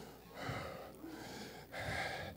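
A man breathing faintly into the microphone: three soft breaths, each about half a second long.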